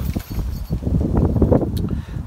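Wind and handling noise on a handheld phone microphone: an uneven low rumble with scattered rustles as the camera is moved in among bare branches.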